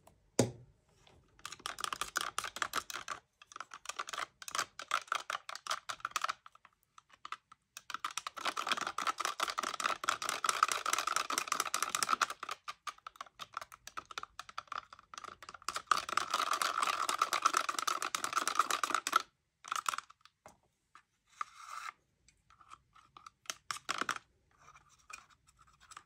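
Metal palette knife stirring and scraping paint around a small cup, in three long runs of rapid small scrapes with short pauses between. A single knock comes right at the start.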